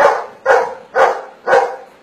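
A dog barking four times, evenly about half a second apart, counting out its answer to a spoken arithmetic sum.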